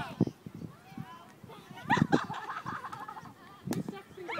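Girls' voices calling out across a playing field, then a single sharp crack near the end, a softball bat hitting the ball.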